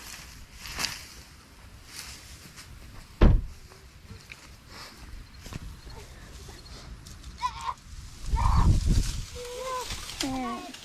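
Footsteps and rustling in dry grass and brush, with a sharp knock about three seconds in and a few brief voice sounds near the end.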